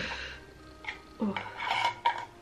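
A candle jar's lid being worked off by hand, with a short scrape just under a second in, followed by a woman's 'ooh'. Faint background music plays underneath.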